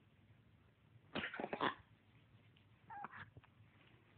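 Maine Coon kitten vocalizing at a dog in two short outbursts. The first and louder comes about a second in and lasts under a second; a shorter one follows about three seconds in.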